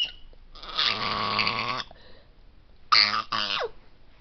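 A person's voice making wordless vocal noises: one long drawn-out sound starting about half a second in, then two short ones near the end, the last falling in pitch.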